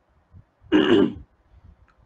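A man clearing his throat once, briefly, a little under a second in.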